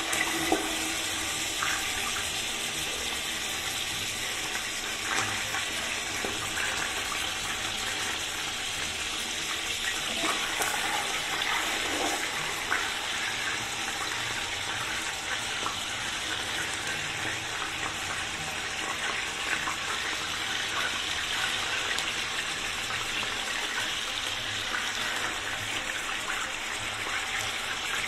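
A steady rushing hiss at an even level, with a few faint knocks as pieces of mutton are laid into a steel pot.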